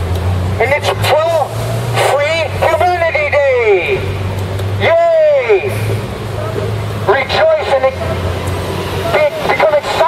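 A man's voice shouted through a handheld megaphone in short phrases with long swoops of pitch, thin and tinny, over a steady low hum of street traffic.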